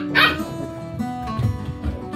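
A seven-week-old Border collie puppy barks twice in quick succession at play, over background music.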